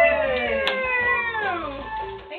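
A woman's long, high cheering whoop that slides down in pitch over about a second and a half, with a single sharp knock partway through.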